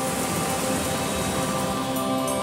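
Steady heavy rain, with the soft held chord of a slow, sad background music track under it.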